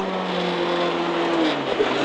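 Renault Clio Williams rally car's four-cylinder engine heard from inside the cabin, holding a steady note under a haze of road noise. About a second and a half in, the engine note drops in pitch as the revs fall.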